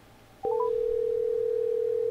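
Outgoing phone call: three quick beeps stepping up in pitch about half a second in, then a steady ringback tone, the sign that the line is ringing at the other end.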